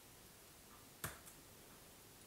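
A single sharp click from a laptop under the hand about a second in, with a faint tick just after, as the on-screen image is stepped to the next one; otherwise near silence.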